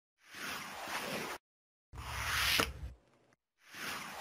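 Sound effects for an animated logo intro: three bursts of swishing noise, each about a second long, separated by dead silence. The middle burst is the loudest and has a low rumble under it.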